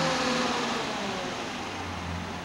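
A car engine running, its pitch and loudness easing slowly down.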